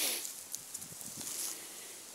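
Dry grass and leaves rustling as a dropped smartphone is picked up from the ground: a brief burst of rustle at the start, then a few light clicks and softer rustling.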